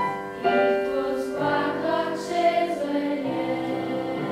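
Children's choir singing long held notes with piano accompaniment, the chord changing about half a second in and again near the end.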